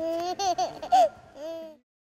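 Baby laughing and babbling in high squeals: one long held squeal, then a few short bursts and a last squeal. The sound cuts off suddenly near the end.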